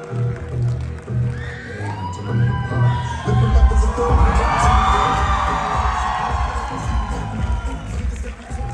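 Dance music with a steady beat playing over loudspeakers. About three and a half seconds in, a crowd starts cheering loudly over it and keeps cheering to the end.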